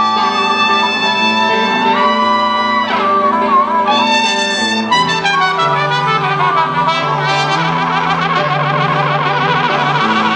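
Blues band playing live, an instrumental passage: a lead wind instrument holds and bends notes over a stepping bass line, and the lead turns to a fast vibrato over the last few seconds.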